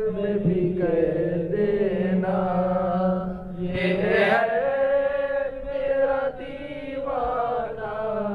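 A man's voice chanting a devotional Sufi zikr in long, held, wavering notes over a steady low drone.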